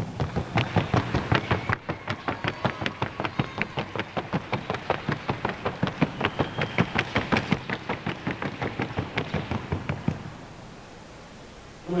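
Hooves of a Colombian paso horse striking a hard track in a fast, even rhythm of sharp knocks, about six a second, the gait being shown for judging; the hoofbeats stop about ten seconds in.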